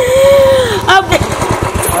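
Royal Enfield Bullet single-cylinder motorcycle engine running with a rapid, even low thudding. A woman's drawn-out voice and a short spoken word sound over it in the first second.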